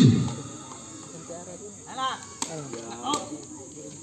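Two sharp kicks of a sepak takraw ball, a little under a second apart, as play starts. Shouts from players and spectators come between them.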